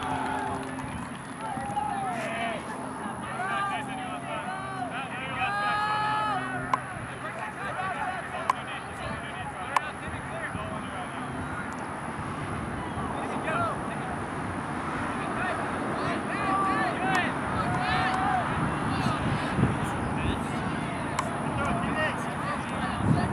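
Shouts and calls of ultimate frisbee players and sideline teammates during play, heard from across an open field over steady outdoor background noise.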